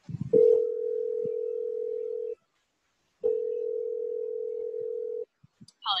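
Telephone ringback tone heard from the caller's end: two steady rings of about two seconds each with a pause of about a second between them. It means the call has gone through and is ringing, not yet answered.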